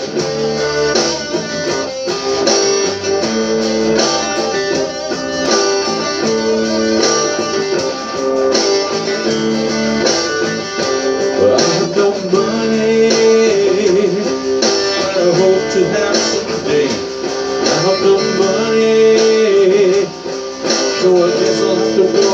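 Amplified electric guitar playing an instrumental passage of a song, with held notes that waver and bend through the second half.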